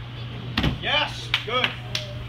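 A dull thud as a body lands on a padded gym crash mat during a forward roll, about half a second in, followed by a person's voice calling out twice, over a steady low hum.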